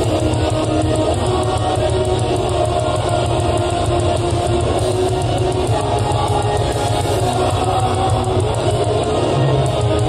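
Live progressive metal band playing a loud instrumental passage: distorted electric guitars over bass and drums, with fast, driving cymbal hits.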